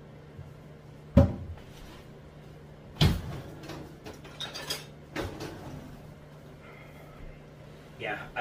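Several sharp knocks and thumps of things being handled and bumped. The loudest come about a second in and about three seconds in, with lighter clattering and another knock after them.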